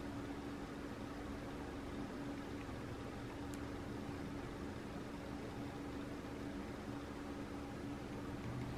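Steady faint hum and hiss of background room noise, like a fan or appliance running, with one constant low tone and no distinct strokes or clicks.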